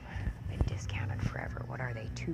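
A woman's voice speaking very quietly, close to a whisper, over a low steady hum, with one sharp tap a little over half a second in.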